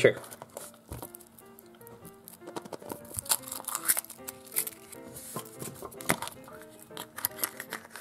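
Foil wrapper of a Kinder Surprise egg crinkling and tearing as it is peeled off, with sharp crackles and clicks. Near the end the plastic toy capsule inside is snapped open. Quiet background music runs underneath.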